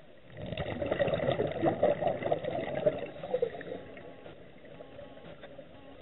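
Water splashing and bubbling in a dive pool. It is loud and choppy for about three seconds, then fades to a faint wash.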